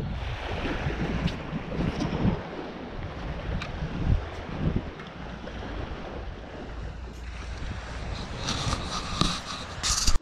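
Wind buffeting the microphone, a steady low rumble with hiss, over faint shore noise from small waves. A brighter, higher sound rises in the last second and a half.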